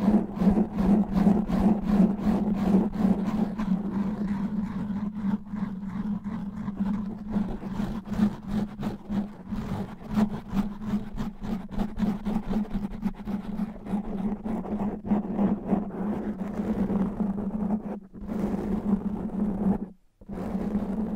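Fingernails scratching fast and hard on a foam microphone windscreen: a dense, rapid run of strokes over a deep rumble from the rubbed foam, with a brief break near the end.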